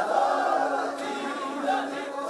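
Many voices singing a chant together, with one note held steadily through most of it.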